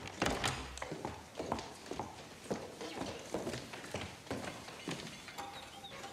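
Footsteps of hard-soled shoes on a wooden floor, an even walking pace of about two steps a second.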